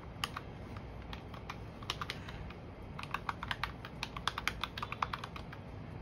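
Plastic keys of a desk calculator being pressed in quick, irregular runs of clicks as a column of figures is added up.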